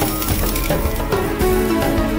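Background music over the rattle of dry rice grains being scooped and poured with a glass in a plastic bowl.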